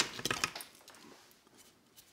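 Broken pieces and grit of a cement block falling and clattering down as a small cluster of clicks in the first half second, right after a steel pistol rear sight is struck against the block's edge.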